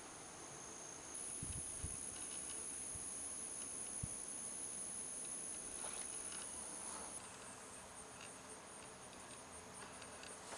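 Insects buzzing in a steady high drone that gets louder about a second in and drops back about seven seconds in. A few soft low knocks come during the louder stretch.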